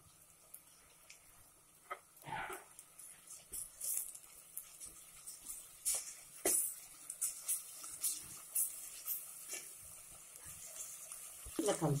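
Sliced onions frying in oil in an aluminium pressure cooker, a faint steady sizzle, with a spatula scraping and knocking against the metal pot at irregular moments as the onions are stirred.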